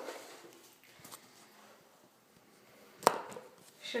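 Quiet small-room tone with a few faint ticks, broken by one sharp click about three seconds in.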